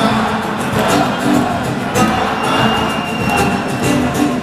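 Live band music played on acoustic guitars, in a passage without singing.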